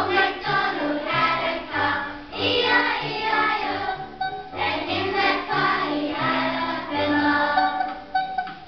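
A group of young children singing a song together, with a musical accompaniment of steady low notes underneath.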